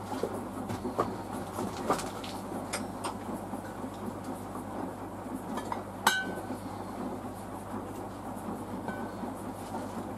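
Samsung WW90K5410UW front-loading washing machine in its wash stage: the drum tumbles a wet load with a steady hum and churning water, and scattered clicks and clinks sound against the drum, the sharpest about six seconds in.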